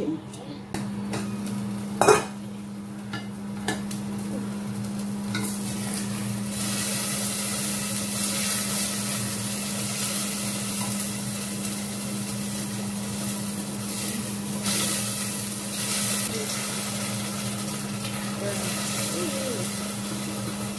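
Wooden spoon stirring a simmering tomato sauce in an aluminium pot on a gas burner, the sauce sizzling, with a sharp knock about two seconds in and a steady low hum underneath.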